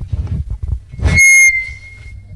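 Microphone handling thumps as the PA microphone is passed, then about a second in a sudden, very loud high-pitched feedback squeal from the PA loudspeaker, which fades to a lingering single-pitch ring near the end.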